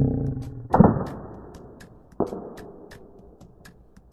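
Nerf foam-dart blaster being worked and fired: three sharp clacks, the loudest about three-quarters of a second in and another a little after two seconds, each dying away quickly.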